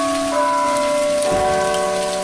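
Background music of held chords that change about a third of a second in and again past halfway, over a steady hiss.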